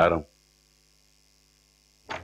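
A man's short spoken reply at the very start, then near silence with a faint, steady electrical hum.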